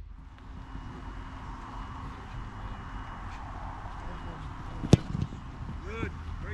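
Outdoor field ambience with steady wind rumble on the microphone, broken by a single sharp smack about five seconds in; voices start just at the end.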